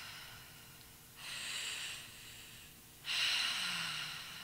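Breathy exhalations into a close-held vocal microphone: two of them, about two seconds apart. The second is louder and trails off in a low, falling sigh.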